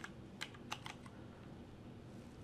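A few keystrokes on a computer keyboard: three light clicks within the first second, then quiet typing noise.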